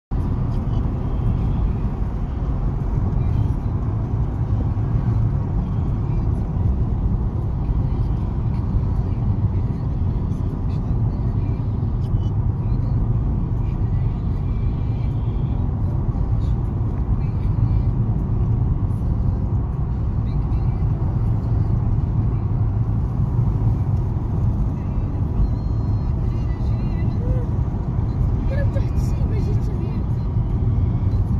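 Steady low road and engine rumble inside a moving car's cabin at cruising speed.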